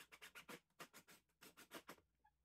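Faint, irregular scratchy clicks, about six a second, as a screw is driven into the wooden cleat with a cordless drill.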